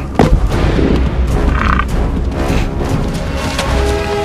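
One heavy crack of two musk ox bulls clashing heads and horns, just after the start, followed by a deep steady rumble under documentary music.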